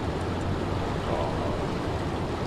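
Steady rush of fast river water churning over rocks.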